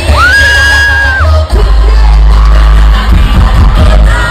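Live reggaeton concert music, loud with a heavy, steady bass. A high voice holds one note for about a second near the start.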